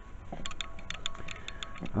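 Camera mount being handled: a quick run of small, irregular clicks and taps, with a faint steady tone underneath.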